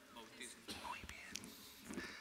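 Faint, distant speech answering off-microphone: the parents' short reply to the priest's question in the baptism rite.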